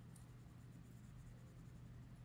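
Faint scratching of a felt-tip marker colouring in a small printed icon, over a low steady hum.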